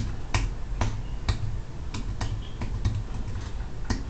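Computer keyboard keys clicking in an irregular run of about a dozen keystrokes: a password being typed at an SSH login prompt.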